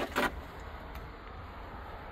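Faint steady background noise with no distinct event, after a brief word-end or breath just after the start.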